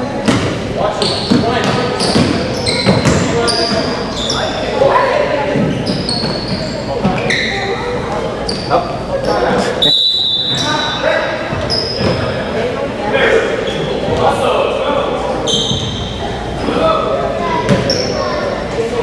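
Basketball shoes squeaking on a hardwood gym floor and a basketball bouncing during a youth game, with voices echoing in the large hall. A referee's whistle blows once, briefly, about ten seconds in, as players pile up over a loose ball.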